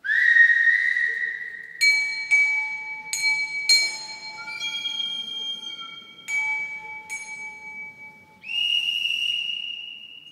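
A whistle blown in one long note that rises slightly as it starts, then a bell struck three times in pairs, its tones ringing on, and a second, higher whistle blast near the end. Together they are the railway departure-signal effects that open an orchestral polka.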